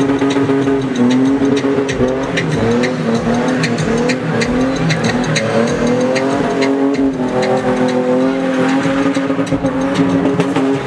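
Ford Cortina spinning car's engine held at high revs, its pitch wavering slightly up and down as the rear tyres spin and squeal. Short crackles are scattered throughout.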